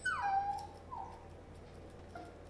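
Shih tzu puppy whining: one falling whine, then a shorter one about a second in.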